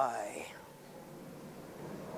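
The drawn-out end of a spoken "good boy" of praise to a puppy, then quiet room tone.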